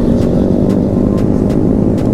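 Motorcycle engine running at a steady cruise of about 38 km/h, with wind rumble on the rider's camera: a steady, loud low drone.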